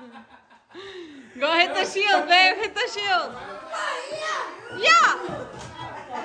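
Several people's excited, high-pitched voices laughing and shrieking in quick bursts, starting about a second and a half in, with one sharply rising shriek near five seconds in.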